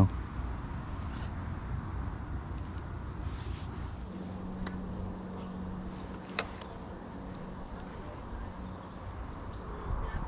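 Wind rumbling on the microphone, with a steady low engine hum from about four to nine seconds in and two sharp clicks about a second and a half apart.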